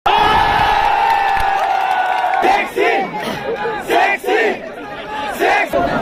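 Cricket spectators shouting and cheering in the stands: one long, held cheer, then a quick run of short, repeated shouts.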